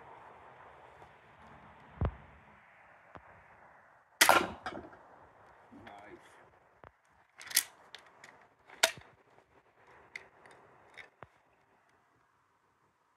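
Crossbow shots at a steel saucepan: a dull thump about two seconds in, then the loudest sharp crack about four seconds in, two more sharp cracks over a second apart later on, and a few lighter clicks near the end, as bolts are loosed and strike and pass through the old steel pan.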